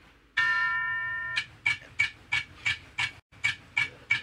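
A one-second electronic chime tone, then a clock-like ticking sound effect at about three ticks a second: a quiz show's timer running.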